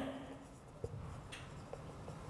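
Faint sound of a marker writing on a whiteboard, with a few light clicks as the pen meets the board.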